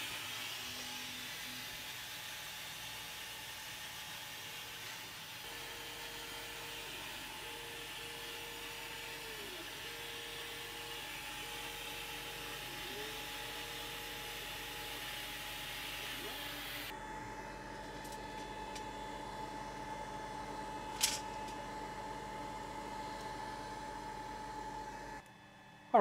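Longer Ray 5 20W laser engraver running a cutting job. There is a steady hiss of air and fan, with a stepper-motor whine that switches on and off and glides in pitch as the head moves. About two-thirds of the way through the hiss drops away, leaving lower motor and fan tones, then one sharp click, and the machine goes quiet just before the end.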